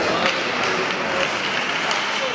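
Ice hockey arena ambience during play: a steady crowd hubbub with scattered voices and a few sharp clacks of sticks and puck on the ice.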